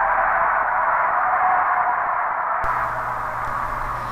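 Steady hiss like radio static, held in a middle band of pitch and slowly fading, with a low hum coming in about two-thirds of the way through.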